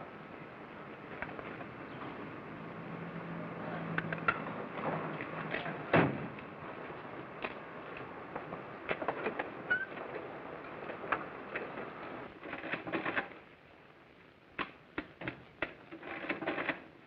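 Old film soundtrack hiss with a car's engine humming low for a few seconds, a sharp thump about six seconds in, and scattered clicks; near the end, typewriter keys clacking one by one.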